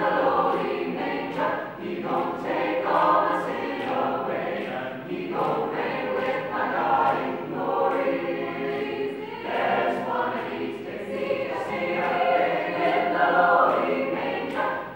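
Mixed choir of men's and women's voices singing a spiritual a cappella, with phrases held and sharp consonants throughout.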